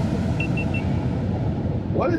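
Steady low road and tyre rumble inside the cabin of a 2023 Tesla Model X Plaid driving at highway speed. Three short high beeps sound about half a second in.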